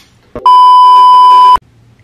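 A censor bleep: one steady, loud, high beep about a second long that cuts in and out abruptly, laid over a word.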